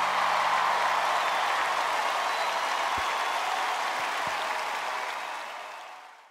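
Audience applauding, a dense steady clapping that fades out near the end.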